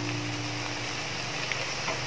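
Squid roast in thick masala bubbling and sizzling steadily in a steel pot on the stove.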